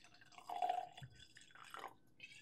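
Whisky poured from a bottle into a tulip-shaped tasting glass: a faint splashing trickle, strongest about half a second in, then a few last drips near the end as the pour stops.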